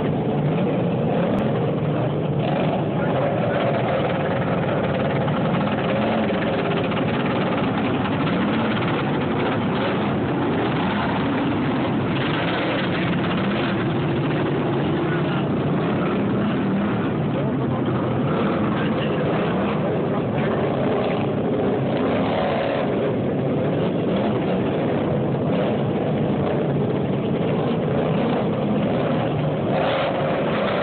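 A pack of racing lawn tractors with V-twin engines running laps together, their engines rising and falling in pitch as they go round the track.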